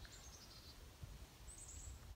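Near silence with faint, high-pitched bird chirps: a short, slightly falling series near the start and another brief run near the end.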